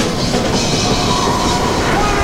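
Loud, dense rumbling and rushing noise over dramatic trailer music.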